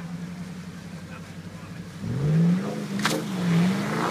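A 4x4's engine idling steadily, then revving up about two seconds in and wavering under load as a stuck Land Rover Discovery is towed out of deep water. A single sharp crack comes about a second after the revving starts.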